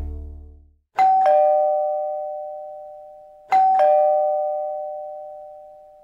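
Background music fading out, then a two-tone ding-dong doorbell chime sounding twice, about two and a half seconds apart. Each ring is a higher note then a lower one that ring out and slowly die away.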